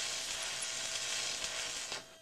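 Steady airy hissing from a shimmering transition sound effect laid under an animated title card, with a faint steady tone beneath; it cuts off sharply at the end.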